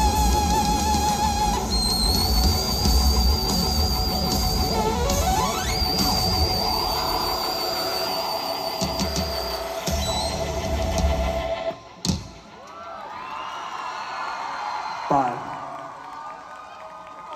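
A live band plays the end of a song through a PA, with held synthesizer tones, one rising glide, bass and drums. It stops on a final hit about twelve seconds in, and the crowd then cheers and whoops.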